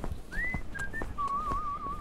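Whistling: a quick rising note, two short high blips, then a held note that wavers up and down.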